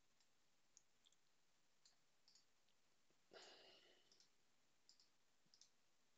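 Near silence with a few faint, scattered clicks of computer use as code is pasted into a text editor, and one brief soft rush of noise about three seconds in.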